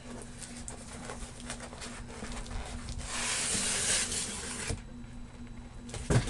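Packaging being handled: light rustles and clicks, then a dense, hiss-like rustle of about a second and a half from about three seconds in that stops abruptly.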